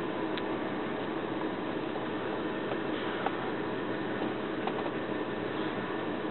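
Steady hiss and hum inside a car's cabin with the engine running, with a few faint ticks.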